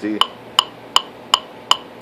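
Wittner MT-50 electronic metronome clicking steadily at about 160 beats per minute, a medium-swing tempo: sharp, evenly spaced clicks a little under three a second.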